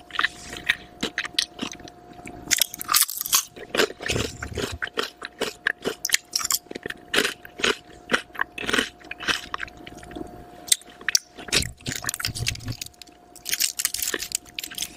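Close-miked chewing and crunching of wavy potato chips: a dense, uneven run of sharp, crisp crunches.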